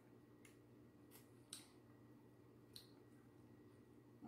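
Near silence: a faint steady room hum with four faint, sharp clicks of eating, the one about a second and a half in the loudest.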